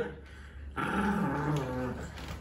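A small dog growling low, starting a little under a second in after a brief lull.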